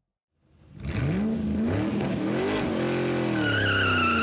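Car engine revving, its pitch rising and falling, with a high tyre squeal joining near the end. It comes in after a short silence about half a second in.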